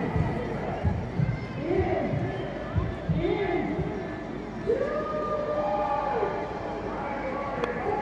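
Voices calling out across an open cricket ground, players and onlookers shouting between deliveries, with a couple of drawn-out calls in the middle, over a steady background haze.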